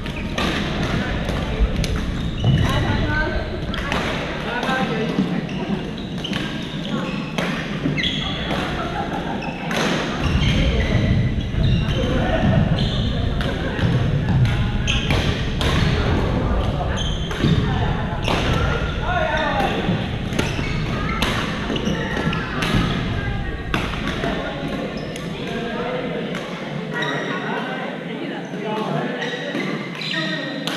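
Badminton rackets hitting shuttlecocks and players' footfalls on a gym floor, many sharp knocks across several courts at once, over a steady background of players' voices in a large hall.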